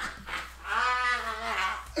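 A man's long, high laughing cry, held for over a second, rising and then falling in pitch.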